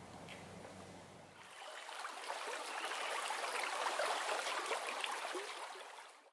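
Quiet room tone, then from about a second and a half in, stream water running and bubbling, swelling up and holding steady.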